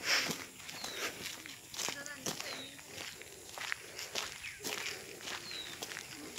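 Footsteps walking on a dirt track, irregular crunching steps. A high, short, falling chirp, typical of a bird call, repeats every second or two, with faint voices underneath.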